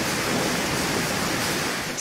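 Refinery gas flare stack burning: a steady, loud rushing noise that cuts off suddenly at the end.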